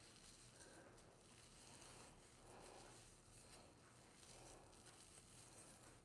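Near silence: room tone, with only faint soft rustling of hands twisting product-coated hair.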